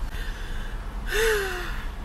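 A woman's breathy sigh, her voice falling in pitch, about a second in, over a steady low rumble.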